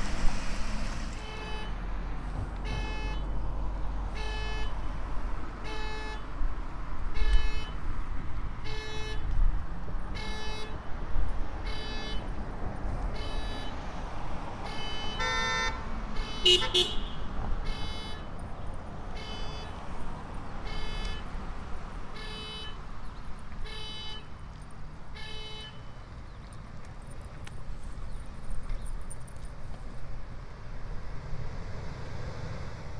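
A car horn sounding short honks at a steady, even pace, about one every second and a half, some sixteen times, then stopping about 25 s in: the regular rhythm of a car alarm. A louder, longer tone and a brief whistle come a little past halfway, over a low rumble of traffic or wind.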